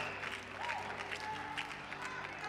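A congregation applauding over soft, sustained keyboard chords.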